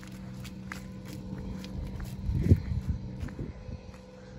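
Footsteps on wet asphalt, a run of short irregular steps with one heavier thud about two and a half seconds in, over a faint steady low hum.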